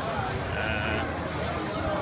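Indistinct background voices over a steady low hum, with a brief thin pitched call about half a second in.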